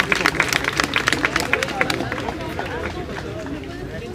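Scattered hand clapping from the crowd, a quick run of sharp claps that dies away about halfway through, over the murmur of voices.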